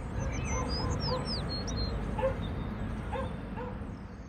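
Outdoor ambience: small birds chirping with quick high whistled notes, clustered in the first second and a half, over a steady low rumble, with a few short lower-pitched calls scattered through.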